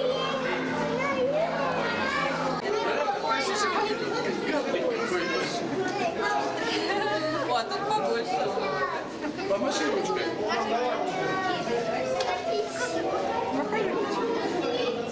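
Crowd chatter: many children's and adults' voices talking and calling out at once, overlapping so that no single speaker stands out.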